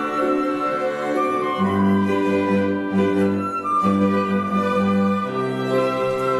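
Live chamber ensemble playing a slow arrangement in long held notes: two violins and a cello bowing, with oboe, flute and electric piano. The bass moves to a new note about a second and a half in and again near the end.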